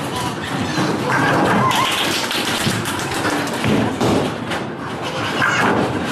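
Bowling alley clatter: the thuds and knocks of bowling balls and pins, with voices in the hall.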